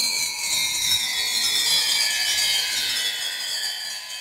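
A rasping, hissing sound effect whose pitch slowly falls, fading out near the end.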